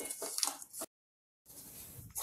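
Wooden spatula stirring and scraping lumps of jaggery in ghee in a steel kadhai: a quick run of scrapes and crackles. It cuts off abruptly into about half a second of dead silence, then softer stirring of the melted jaggery syrup follows.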